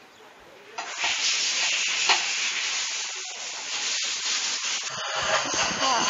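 A steady hiss that starts suddenly about a second in, with a few faint knocks.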